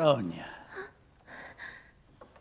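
An old man's voice: a short voiced exclamation at the start that rises then falls in pitch, followed by a few soft breathy huffs, like a wheezy chuckle.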